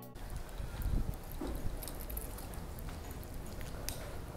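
Footsteps on a hard tiled floor, a few scattered clicks over the rumble and rubbing of a phone microphone being carried in hand.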